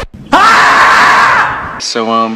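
A person's loud, drawn-out cry, rising in pitch at the start and lasting about a second before fading.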